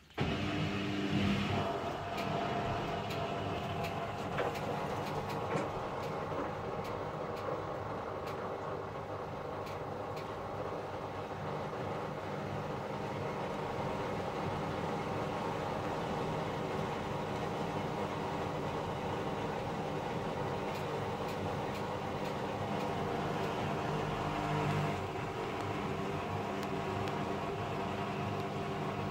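Samsung WW75TA046TE front-loading washing machine starting a spin: the drum motor cuts in suddenly and then runs steadily as the drum turns fast, a hum made of several steady tones with swishing laundry, the wet clothes pinned against the drum.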